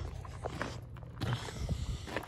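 Footsteps walking on rough ground: a few soft, irregular scuffs and ticks over a low rumble of the phone being handled.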